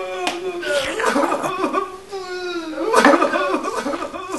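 A person's voice wailing in long, wavering, drawn-out tones that break into shorter bursts, loudest about three seconds in.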